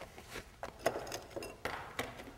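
A few faint, scattered clinks and knocks from glassware being handled.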